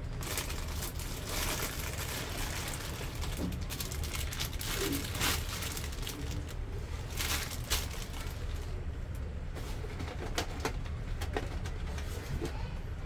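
Plastic bag and cardboard box rustling and crinkling in repeated bursts as a toy is drawn out of its packaging, over a low steady hum. A dove coos faintly in the background around the middle.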